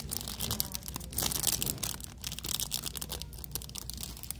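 Clear plastic packaging crinkling as it is handled by hand: a packet of hair clips on a store peg, rustling in quick, irregular crackles.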